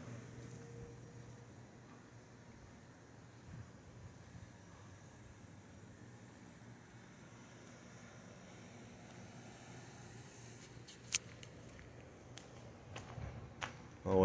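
Quiet outdoor background: a faint, steady low hum, with a few sharp clicks near the end, one louder than the rest.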